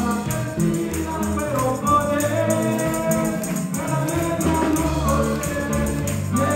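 Live church worship band playing: several voices singing together over keyboard and electric bass, with a steady percussion beat.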